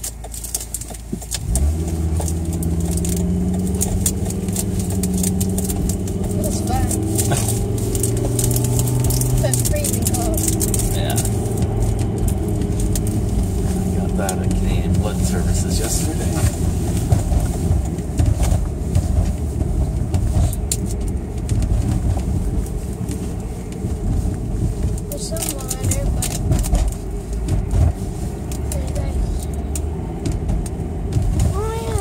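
Car engine and road noise heard from inside the cabin while driving. The sound rises about a second and a half in, with a steady engine hum for several seconds that gives way to continuous low road noise.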